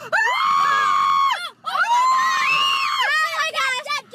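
High-pitched human screaming: two long screams of about a second and a half each, then shorter wavering shrieks near the end, a reaction to baby praying mantises swarming in the car.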